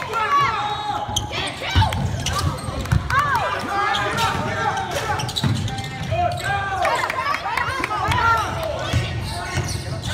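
Basketball game on a hardwood gym floor: sneakers squeak again and again as players cut and stop, and the ball thumps on the floor, echoing in the hall.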